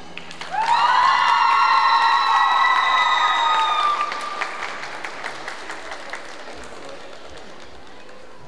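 Audience applauding, with a high, drawn-out cheer from several voices that starts about half a second in and holds for about three seconds. The clapping then thins out and fades.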